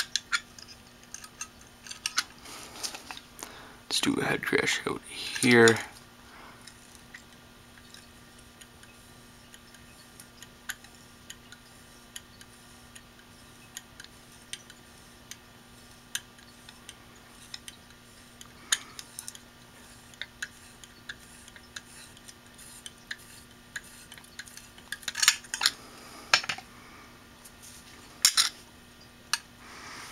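Small metallic clicks, taps and scrapes of an opened hard drive being worked by hand, its platter turned while the read/write head is pressed against it, scoring the disk surface. A louder scraping burst comes about four seconds in, and two more near the end.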